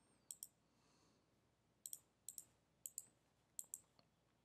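Faint computer mouse clicks over near silence: about five pairs of short, sharp clicks, spaced roughly half a second to a second apart.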